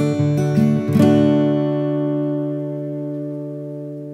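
Guitar music: a few quick plucked notes, then a final chord about a second in that rings on and slowly fades away.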